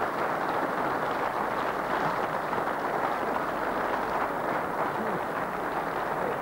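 Studio audience applauding, a steady even clatter of many hands.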